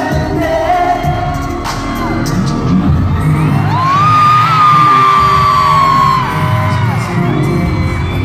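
Live pop song with singing played loud through an arena sound system, recorded from among the audience. About three and a half seconds in, a high voice sweeps up and holds one long note for about two seconds.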